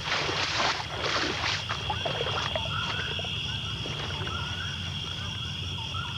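Leafy brush rustling as a man pushes through branches, in two bursts during the first second and a half. Under it runs a steady high insect drone and a low hum, and small chirping animal calls come and go after the rustling stops.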